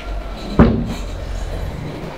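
A kitchen cabinet door swung shut with a single sharp bang about half a second in.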